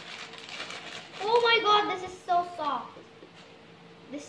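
A young girl's voice making two short wordless vocal sounds, about a second in and again near the middle. In the first second there is faint rustling from the clear plastic bag she is opening.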